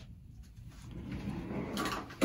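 Faint rustling and handling noise, growing louder through the second half with a brief brighter burst near the end.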